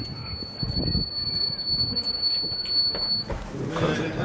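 Electronic door-release buzzer on a jeweller's entry door: one steady high-pitched tone while the lock is held open, cutting off suddenly about three seconds in.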